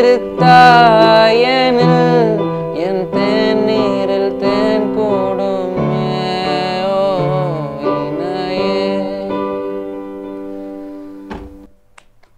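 A man singing a slow, gliding melody over steady held keyboard chords. The song trails off near the end and stops after a short click.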